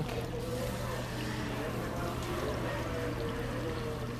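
Steady café background ambience: a low hum under an even hiss, with a faint wavering tone.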